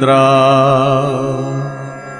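A man's voice sings a Kashmiri devotional vaakh, holding the closing word "drav" of the verse on one long note with a gentle waver, over a musical accompaniment. The note fades out near the end.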